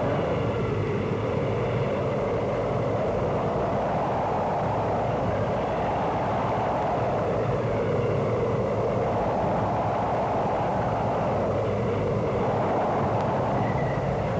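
A steady rumbling, rushing noise that swells and fades slowly every couple of seconds, with no distinct beats or clicks.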